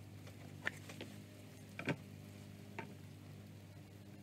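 A few faint, short clicks, about a second apart, from small handling of objects, over a low steady hum.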